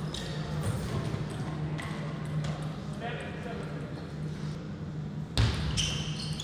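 Table tennis ball clicking off bats and table in quick exchanges, then a voice about halfway through and a single louder knock near the end, over a steady low hum in the hall.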